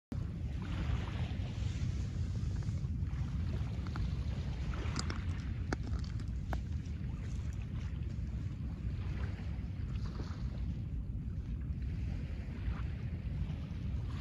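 Small waves washing onto a pebble beach, swelling about every four seconds, with a few pebbles clicking about five to six seconds in. Under it runs a steady low rumble of wind on the microphone.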